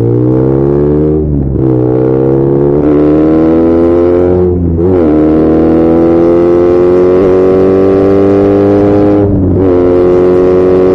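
BMW R nineT's boxer twin, breathing through open aftermarket headers with the exhaust flapper valve removed and no airbox, pulling hard under acceleration. Its note rises steadily and drops sharply at three upshifts: about a second and a half in, just under five seconds in, and near the end.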